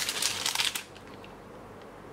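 A foil-lined plastic snack packet crinkling as it is handled. The rustle stops under a second in, leaving quiet room tone.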